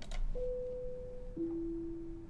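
Two-tone PA pre-announcement chime, a higher tone followed by a lower one, played as a pre-recorded message is sent to the PA zone, just before the announcement itself.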